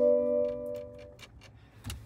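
A sustained electronic chord from the car's audio system, fading out about a second in, followed by a few faint light ticks.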